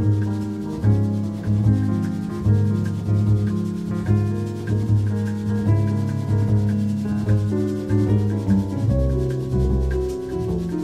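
Bossa nova jazz recording: piano over a walking double bass, with drums keeping a steady, evenly accented rhythm.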